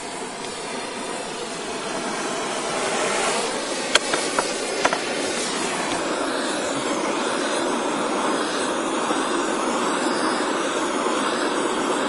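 Acetylene torch flame hissing steadily as it heats a zircaloy fuel-rod tube until it glows cherry red. A few short sharp clicks sound about four to five seconds in.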